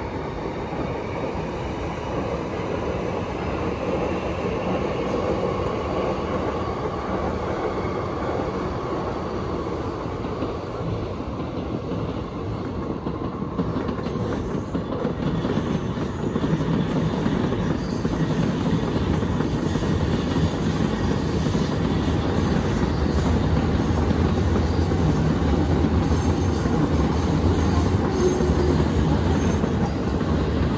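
Electric commuter trains running on the tracks: a continuous rumble of wheels on rail, with some wheel squeal and clickety-clack. It grows louder and deeper about halfway through as more trains pass.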